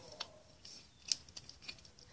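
A few light plastic clicks and taps from a toy baby bottle and plastic doll being handled, the sharpest about a second in.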